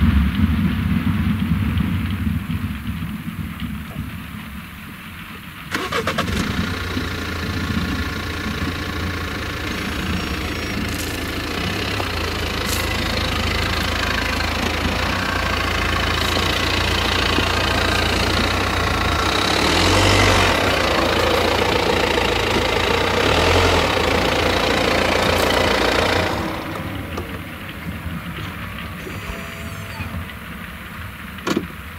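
ROPA Maus 5 sugar beet cleaning loader at work: its diesel engine drones steadily. About six seconds in, a loud rattling clatter of beets being picked up, cleaned and conveyed up the boom into the truck starts suddenly and grows. It stops a few seconds before the end, leaving the engine running.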